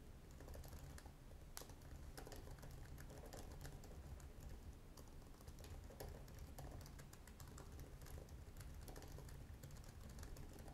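Faint computer keyboard typing: an irregular, continuous run of keystroke clicks.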